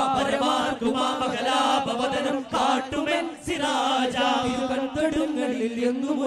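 A group of young male voices singing a chant-like religious song in unison, with duff frame drums struck in rhythm under the singing.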